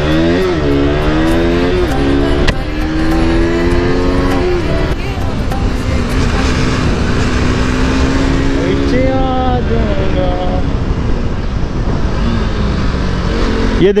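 KTM RC sportbike's single-cylinder engine under way, climbing in pitch as it accelerates, with a gear change about two and a half seconds in, then holding a steadier note at cruising speed. Wind rushes over the helmet microphone throughout.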